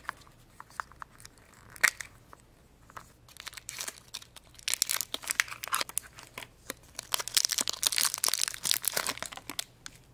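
Small hinged plastic toy backpack capsules clicking and snapping open, then several seconds of crinkling and tearing as the thin plastic wrapper around a small toy figure is pulled open, starting about halfway through.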